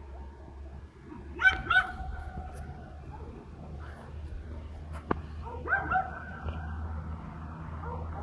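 A dog barking: two sharp barks in quick succession about a second and a half in, and two more a little before six seconds.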